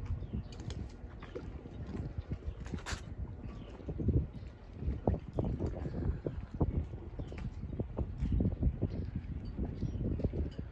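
Footsteps on wooden dock planks: a string of irregular hollow knocks.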